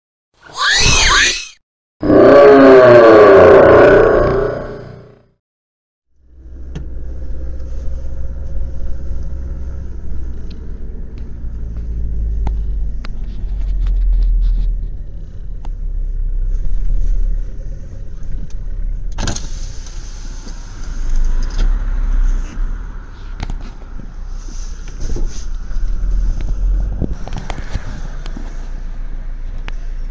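Two loud bursts of an intro sound effect, then a steady low rumble of car and traffic noise. A sharp knock comes about two-thirds of the way through.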